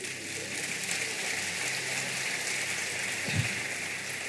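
A large congregation applauding: steady, dense clapping that holds through the whole stretch.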